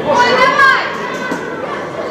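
Boys' voices shouting and calling on a football pitch in a large echoing indoor hall, with one loud high-pitched shout in the first second.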